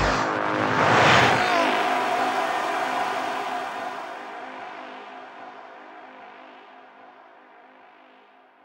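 Closing bars of a psytrance track: the kick-drum beat cuts off, a whooshing noise sweep swells and falls about a second in, then a sustained synth drone fades slowly out.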